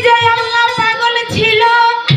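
A woman singing a Baul song through a stage PA system, sliding up into one long held note.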